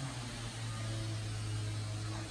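A steady low hum under an even background hiss.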